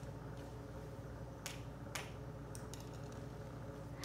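Dry spaghetti strands being handled by small hands, giving about five faint, sharp clicks over a low steady room hum.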